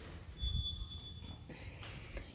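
A single high-pitched electronic alarm beep, one steady tone lasting about a second, starting about half a second in, with a soft low thump underneath.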